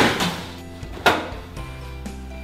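Two sharp thuds about a second apart, from wet laundry being handled and moved from a top-loading washer into a dryer drum, over steady background music.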